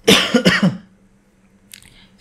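A man coughs once, a short burst of about three quarters of a second.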